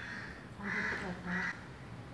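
Two short calls from a bird, the first a little longer, about half a second apart.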